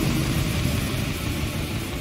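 The last chord of a punk rock song ringing out and fading away after the shouted vocal ends: a dense, noisy wash that grows steadily quieter.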